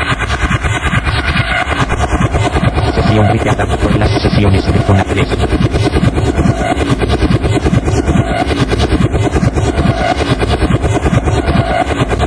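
Techno from a club DJ mix: a dense, fast-pulsing, noisy track with a heavy low end and a texture that repeats every couple of seconds.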